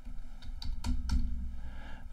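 Computer keyboard typing: an irregular run of quick key clicks as a short line of text is typed.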